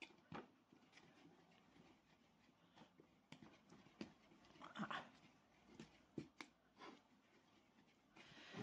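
Faint rubbing and soft, scattered knocks of a hollow clay ball being rolled around inside a bowl under light hand pressure, close to silence.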